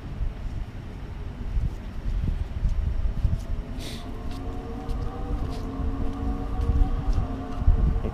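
Outdoor wind rumble on the microphone, with a steady hum of several tones, slowly rising, coming in about halfway through from an unseen machine or vehicle. A brief rustle of sleeved trading cards being flipped through by hand.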